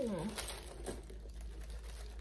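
Packaging crinkling and rustling as it is handled, in short irregular bursts. At the very start a drawn-out pained "ow" falls in pitch.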